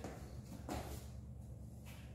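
Two faint scuffs of trainers on a gym floor as a person steps and shifts weight, over a low steady room hum.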